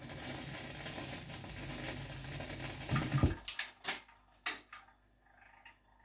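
Faint crackle of a vinyl record's surface playing on through a 1956 Dynatron Berkeley radiogram after the song has faded out. About three seconds in, a clunk and a few sharp mechanical clicks follow as the record changer's mechanism works the tonearm at the end of the record.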